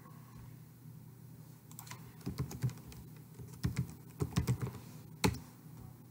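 Computer keyboard being typed on, an uneven run of key clicks over a few seconds, ending in one louder click.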